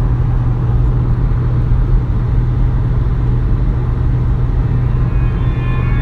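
Steady low rumble with a constant deep hum. A few faint high tones come in near the end.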